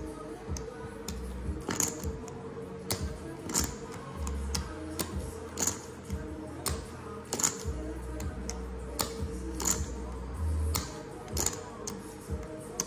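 Poker chips clicking against each other as a player handles a small stack in one hand, sharp irregular clicks one to a few a second. Background music with a steady bass line runs underneath.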